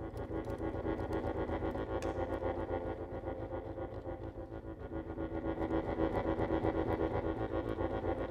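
Accordion playing a dense, sustained chord cluster with fast, even pulsing, growing louder toward the middle of the passage.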